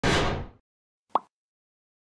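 Sound effects of an animated logo intro: a short burst that dies away within half a second, then a single short pop about a second in.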